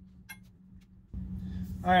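A few faint, small metallic clinks from an Allen key and screw hardware being handled on a plastic mud flap. About a second in, a steady low shop hum comes up, and a man starts speaking near the end.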